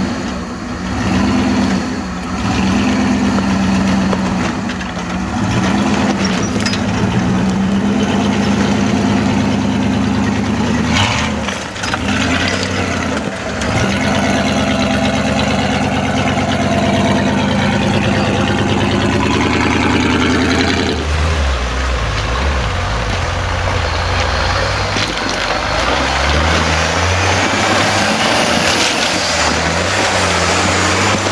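Engines of modified off-road 4x4s crawling over rocks, running under load with the revs varying. About twenty seconds in, the engine note changes abruptly to a deeper one.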